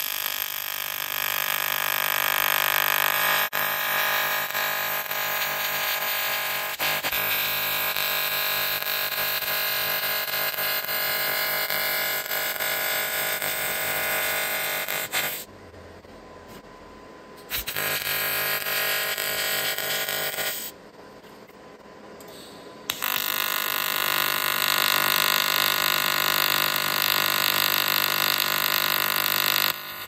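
AC TIG welding arc on aluminum, a steady electrical buzz with a fixed pitch. It stops twice for a couple of seconds, about halfway through and again a few seconds later, and then starts up again.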